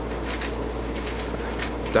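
Faint, irregular clicking of a magnetic 3x3 speedcube's plastic layers being turned quickly in the hands, over a steady low room hum.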